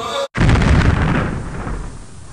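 Explosion sound effect: music cuts off, then a sudden loud blast about a quarter second in, with a deep rumble that fades away over the next two seconds.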